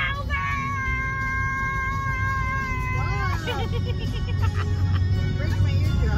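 A woman singing along in a moving car: one long high note held for about three seconds, then a short wavering run, over the car's low road rumble.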